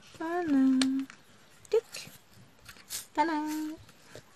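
A woman's voice making two drawn-out wordless sounds, like a hum or a held hesitation 'euh': the first slides slightly down in pitch, the second holds level. A few faint clicks sound between them.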